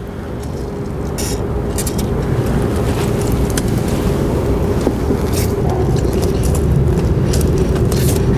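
Several short hisses of aerosol lubricant sprayed onto a rail switch machine's lock dog and gear teeth, about a second in, two seconds in, five seconds in and at the end, over a steady low vehicle-like rumble with a hum that grows slowly louder.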